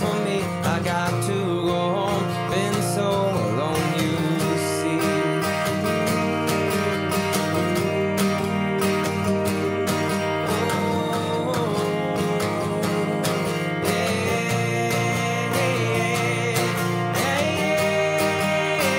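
Acoustic guitar strummed steadily in a solo live song performance, with a voice briefly singing a few wordless lines at moments.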